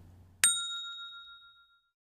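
A single bright bell ding, the notification-bell sound effect of a subscribe-button animation. It strikes about half a second in and rings out, fading over about a second and a half.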